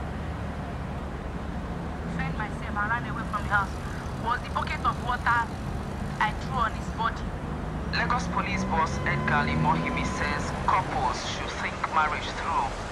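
Talk from a radio, people speaking one after another, starting about two seconds in, over a steady low hum of vehicle engines in traffic.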